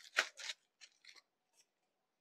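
A folded saree and its paper insert being set down on a counter: two short rustling swishes near the start, then a few faint ticks of handling.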